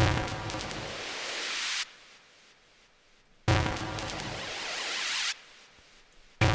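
Layered electronic riser sound effect played twice: a sharp noise hit blended with a chopped, reversed white-noise riser, soaked in delay and reverb. Each pass lasts about two seconds, swells slightly and then cuts off abruptly.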